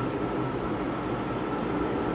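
Whiteboard duster rubbing back and forth across a whiteboard, a steady scrubbing noise.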